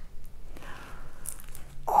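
Mostly quiet, with light rustling as the diamond painting canvas is handled, then a woman's long exclaimed "oh" starting near the end.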